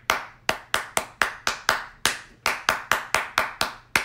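Hand claps in a short, steady repeating rhythm, about four claps a second, demonstrating how simple a single player's part in West African Ewe drumming is when it is repeated over and over.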